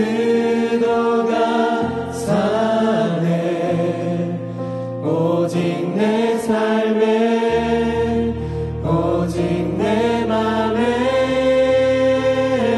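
Contemporary worship band playing a Korean praise song: a group of singers singing together in long held lines over electric bass and acoustic guitar, with the bass note changing every couple of seconds.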